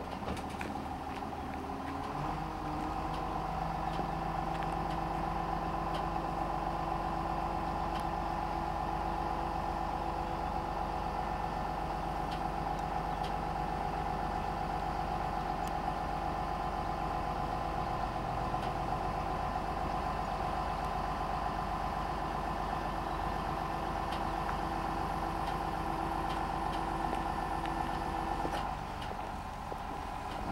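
Tractor engine and hydraulic pump powering the rams that lift a side-tipping grain hopper trailer's body. The engine picks up about two seconds in and runs steadily with a constant high hydraulic whine, easing off briefly near the end as the lift pauses.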